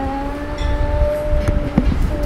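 A woman singing slowly, holding one long steady note, with a couple of small knocks near the end.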